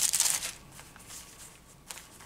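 Thin pages of a Bible being leafed through while looking for a verse: a quick papery riffle in the first half second, then fainter rustling and a single soft tick near the end.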